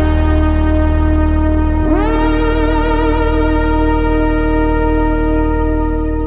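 Roland JD-XA synthesizer holding a sustained chord. About two seconds in, a new chord enters with its notes sliding up into pitch, then holds steady.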